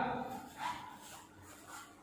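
The end of a man's kiai shout ("yeah") fading out in an echoing hall, followed by a faint short sound about half a second in, then quiet room tone.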